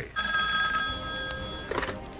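Telephone ringing: one steady ring of about a second and a half that fades a little, then stops.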